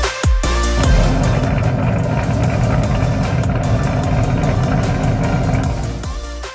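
A car engine running steadily with a low, pulsing rumble. It follows about a second of electronic dance music, which cuts off.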